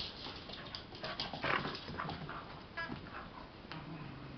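A dog whining, several short high-pitched whimpers spread over a few seconds.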